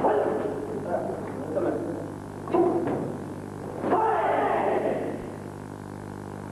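Karate fighters' kiai shouts during kumite sparring: loud, short yells near the start and about two and a half seconds in, and a longer one falling in pitch about four seconds in, mixed with a few sharp knocks of strikes or foot stamps. A steady low hum from the camcorder runs underneath.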